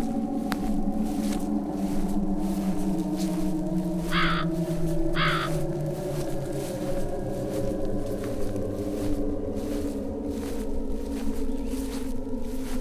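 Low, slowly shifting eerie music drone, with two short crow caws about a second apart around four seconds in.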